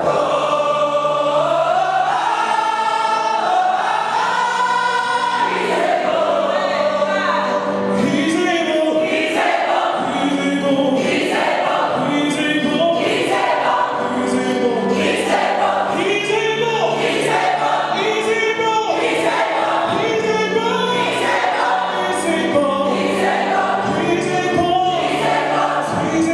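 Large mixed gospel choir singing in full voice. From about eight seconds in, a sharp beat falls about once a second under the singing.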